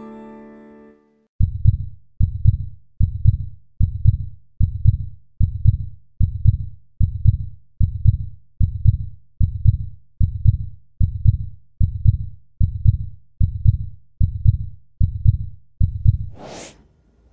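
Heartbeat sound effect on the soundtrack: a steady low thumping beat, a little over one beat a second, starting about a second and a half in as a fading piano chord dies away.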